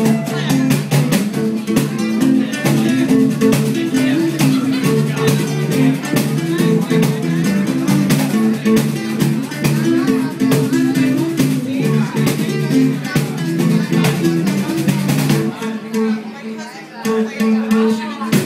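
Live acoustic band playing an instrumental passage: two acoustic guitars strumming over electric bass guitar. The low bass notes thin out briefly near the end before the full band comes back.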